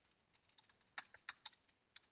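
A handful of faint, short clicks of computer input as an item is picked from a drop-down list, most of them about a second in.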